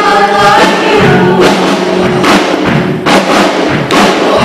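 A live band performing: a man and two women singing together over a strummed acoustic guitar, with a sharp thump or strum accent about once a second.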